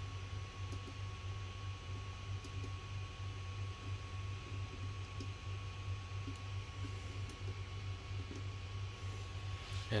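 Steady low hum with a faint thin high tone, and a few light clicks as a USB power meter and its charging cable are handled.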